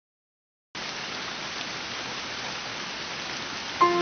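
A steady, even hiss like rain or static that starts abruptly about three-quarters of a second in. Near the end, piano notes come in as the music starts.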